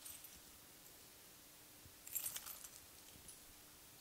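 Keys jangling and metal clicking as a frosted-glass office door is unlocked and opened: a short rattle at the start and a louder cluster of clinks about two seconds in.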